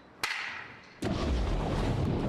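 A starting pistol fires once for the swim race, with a short ringing tail; about a second later a loud rushing, churning water sound begins as the swimmer dives in and swims underwater.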